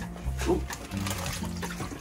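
Background music with steady low bass notes that change every half second or so, and a short "ooh" from a voice about half a second in.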